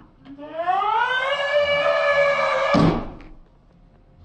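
A long, effect-processed voice note that rises in pitch over about the first second and then holds. It is cut off about three seconds in by a sharp crash of the door breaking.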